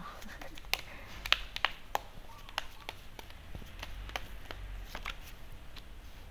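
A deck of tarot cards being handled and shuffled by hand: irregular soft clicks and slaps of card edges, most frequent in the first two seconds.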